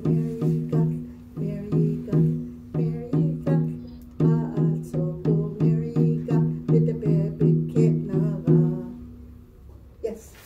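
Frame hand drum beaten with a padded stick at about three strokes a second, each stroke a low boom, while a woman sings a Navajo song over it in phrases with short breaks. Drum and song stop about nine seconds in.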